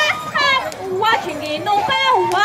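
Several high-pitched voices at once, in held notes that glide up and down and overlap.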